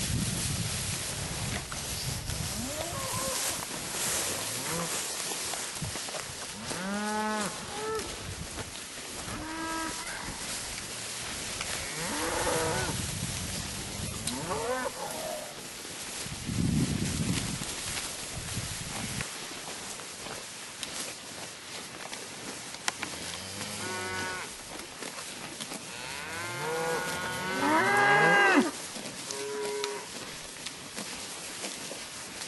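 A herd of beef cattle mooing as they move through tall grass: separate moos come every few seconds, and several calls overlap in the loudest moment just before the end.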